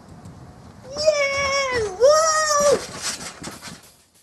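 A boy's long high-pitched yell in two parts, with a dip in pitch between them, as he jumps from a shed roof onto a trampoline. A short scuffling clatter follows as the yell ends.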